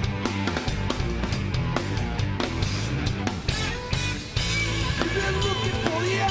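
Live rock band playing an instrumental passage: a Tama drum kit driving a steady beat under electric guitars and bass. The sound thins briefly a little past four seconds in, then the full band comes back in, with bending guitar notes near the end.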